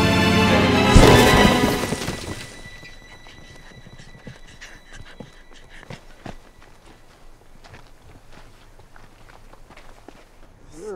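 Music gives way about a second in to a loud race-car crash, a sudden impact whose noise fades over the next second or so. After it comes a much quieter stretch with scattered footsteps and small knocks on dirt.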